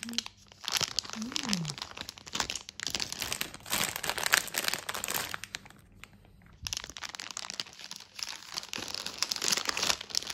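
Plastic candy bags crinkling as they are handled, in repeated bursts, with a short pause about six seconds in.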